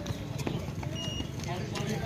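Runners' shoes slapping on the asphalt and the finish-line timing mat, a few quick footfalls, over background voices. A short high beep sounds about a second in.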